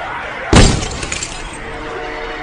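A single sudden loud crash about half a second in, breaking up into a scattered tail that dies away over about a second. Faint trailer music runs underneath.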